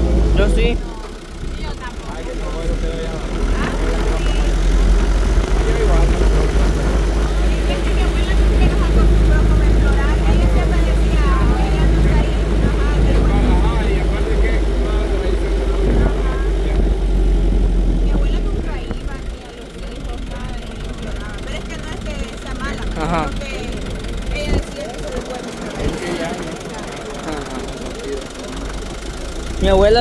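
Steady low rumble of a moving pickup truck, heard from its open bed with wind and road noise heavy on the microphone. It eases off about two-thirds of the way in. People's voices talk under it.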